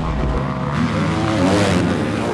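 Motocross dirt bike engine revving, its pitch rising and falling.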